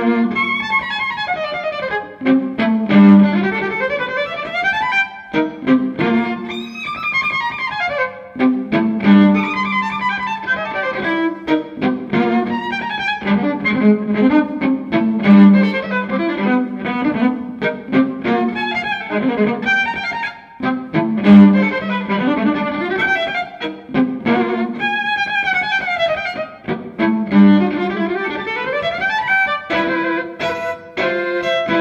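Solo violin playing quick runs of notes that sweep up and down, coming back again and again to a low note on the bottom string.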